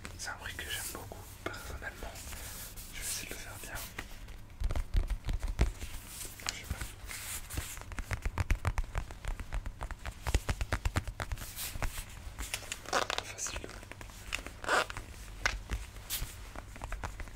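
Close-miked ASMR tapping and scratching: fingertips tapping, clicking and rubbing on a hard object held up to the microphone. It starts sparse and turns into dense, irregular runs of sharp taps with low thumps from about four seconds in.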